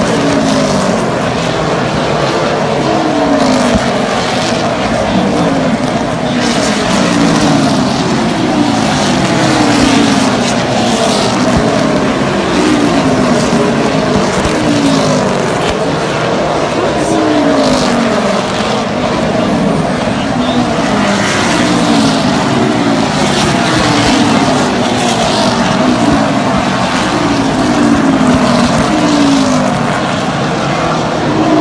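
A pack of super late model stock cars racing on a short oval, their V8 engines at full throttle. Cars pass one after another in falling-pitch sweeps.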